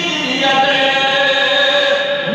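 Male voice singing a devotional tarana into a microphone in a slow chant, holding one long note from about half a second in.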